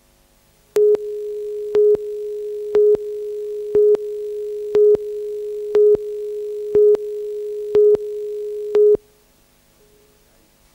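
Videotape countdown leader tone: a steady beeping tone with a louder beep once a second, nine beeps in all, starting just under a second in and cutting off about nine seconds in.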